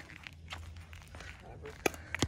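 Footsteps on a concrete driveway over a low rumble, with faint scuffs and one sharp knock just before the end.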